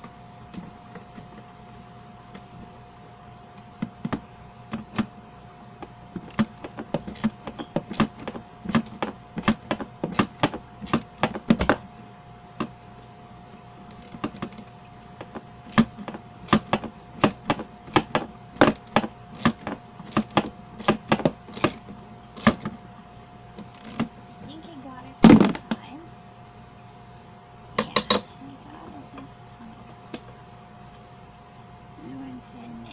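Metal wrench clicking and clinking against a bolt in quick, irregular runs as a bolt is tightened into a plastic wagon tub, with one louder knock late on, over a faint steady hum.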